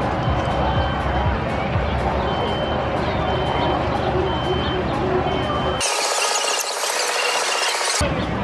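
Amusement park background sound: crowd voices and music, with a short high tone repeating about once a second. About six seconds in, the deep part of the sound cuts out abruptly and a bright hiss takes over.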